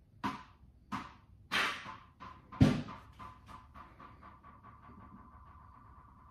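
A ball bouncing on a hard floor: a few separate bounces, the loudest about two and a half seconds in, then a quickening run of smaller bounces that fade as the ball settles.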